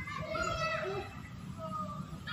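Children's voices calling out in the background, high-pitched, with one longer call early on and a shorter one near the end, over a steady low rumble.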